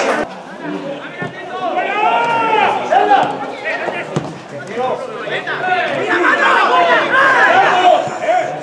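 Several people talking and calling out over one another, with no other clear sound standing out.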